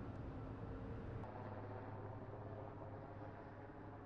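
Faint, steady low rumble and hum of ship machinery, with a few higher tones joining about a second in.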